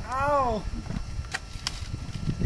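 A man's short vocal cry that rises and falls in pitch, then two sharp clicks close together.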